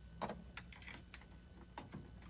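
A door handle and latch clicking and tapping as a wooden door is eased open: a handful of short, irregular clicks, the loudest about a quarter of a second in.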